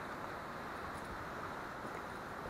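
Steady, even rushing of a distant mountain waterfall, faint and unchanging.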